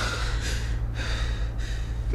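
A woman crying: two long, shaky sobbing breaths over a steady low hum.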